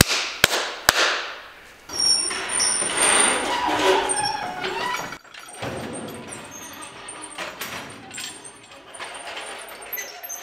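Two sharp claps about half a second apart near the start, then a few seconds of loud noisy scraping. After a short break come lighter metallic clattering and knocks as a blue hydraulic engine hoist and its hanging chain are handled.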